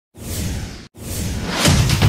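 Two whoosh sound effects from a logo intro. The first cuts off abruptly just short of a second in, and the second swells up into loud electronic intro music that starts near the end.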